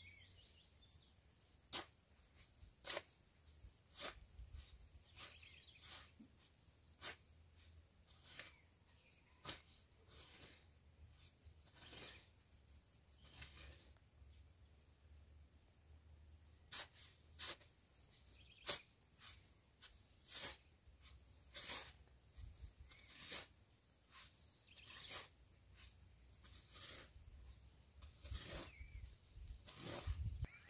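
Faint, dull strikes of a hand hoe chopping into loose, freshly tilled soil, roughly one a second with a short pause about midway, as the soil is shaped into planting beds.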